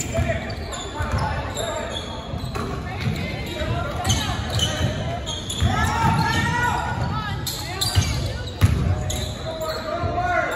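A basketball being dribbled on a hardwood gym floor during a game, with players' and spectators' voices calling out, echoing in the hall.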